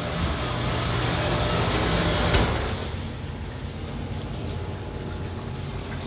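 Hot-water cabinet parts washer running with a steady rushing noise and hum. About two and a half seconds in there is a sharp click and the noise drops to a lower, steady level.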